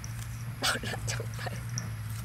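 A voice speaking a brief phrase about half a second in, over a steady low hum, with a few faint high chirps.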